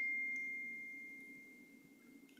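A single faint, steady high-pitched tone fading away, leaving near silence for the second half.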